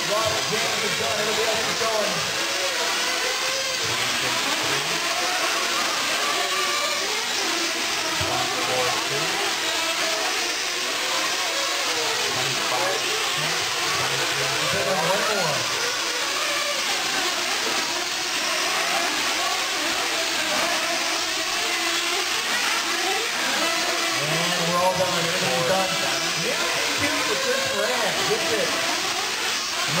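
Several 1/8-scale nitro RC truggies' small two-stroke glow engines running at once, their high whine rising and falling as they rev and back off around the track, overlapping throughout.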